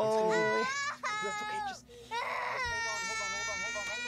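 A man screaming and crying out in pain while something is pulled out of his wound: several long, high cries in a row, one of them rough and rasping about two seconds in.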